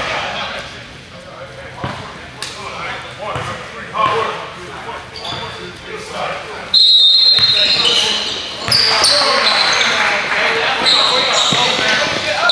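Indoor basketball court sounds: voices talking around the gym, then, after a sudden jump in loudness about halfway through, a basketball bouncing and short high squeaks of sneakers on the hardwood floor, echoing in the hall.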